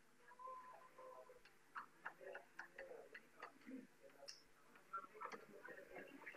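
Faint, irregular clicks of chalk tapping on a blackboard as an equation is written.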